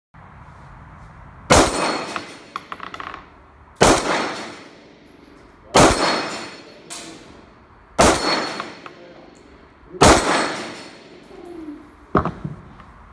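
CZ SP-01 Shadow pistol firing five single shots about two seconds apart at steel knock-down plates, each shot followed by the clang of a hit plate. The first hit is followed by a short metallic rattle.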